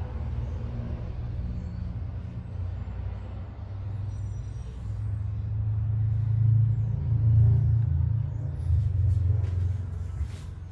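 A low rumble that swells from about five seconds in and eases near the end.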